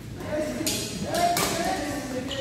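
Badminton doubles rally: a few sharp racket strikes on the shuttlecock, with short calls from the players, in a large reverberant sports hall.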